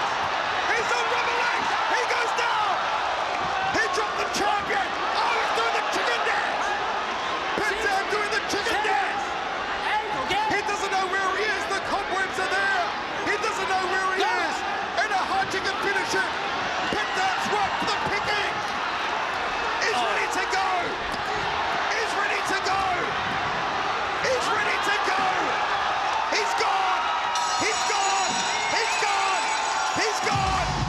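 Arena crowd yelling and cheering without a break, with many sharp thuds through it as strikes land.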